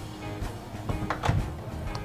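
Background music bed, with no clear sound from the microwave or the meter.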